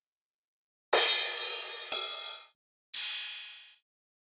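Sampled drum-machine crash cymbals previewed one after another: three hits about a second apart, each dying away, the last shorter and thinner than the first two.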